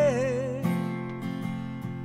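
Steel-string acoustic guitar strumming chords. A sung note is held with a slight waver at the start and fades within the first half second, and then the guitar carries on alone with a strum about every half second.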